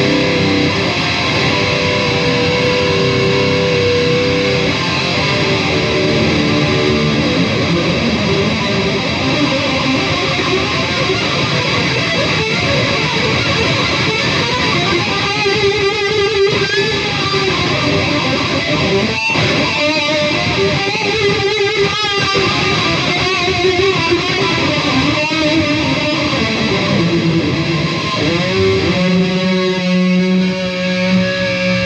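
Charvel electric guitar with EMG pickups, tuned down a whole step, played continuously as shred-style lead through an effects chain that includes a MIMIQ doubler. Held notes waver in pitch about halfway through.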